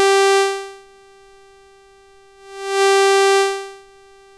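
A held note from the AddStation additive synthesizer, a single steady pitched tone rich in overtones. Its volume swells up and fades twice, about three seconds apart, as the loop steps through blocks set to alternating levels: a slow gating effect.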